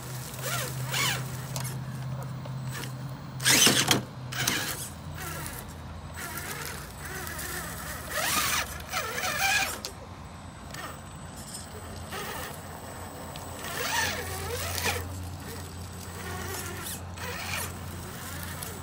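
Electric motor and drivetrain of a Traxxas TRX-4 RC crawler humming at low speed, its pitch shifting as the throttle changes, while the tyres scrabble and crunch over rocks and dry leaves in short bursts. The loudest scrape comes about three and a half seconds in.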